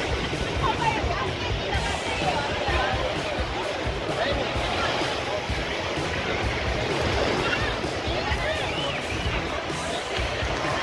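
Crowded beach ambience: many voices chattering and calling over small waves washing onto the sand, with wind rumbling on the microphone.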